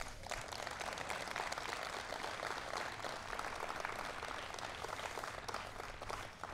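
Audience applauding steadily, tapering off near the end.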